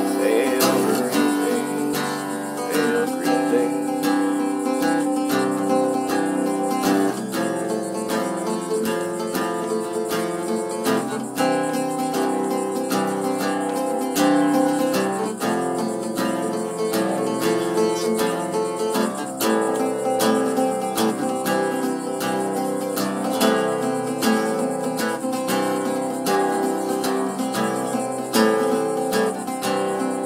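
A mandocello, a large mandolin tuned C-G-D-A like a cello, strummed and picked in a steady, fast rhythm in an instrumental passage without singing.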